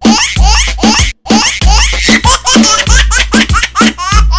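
Song with a heavy bass beat and a baby's voice and laughter cut into quick, repeated rising bits.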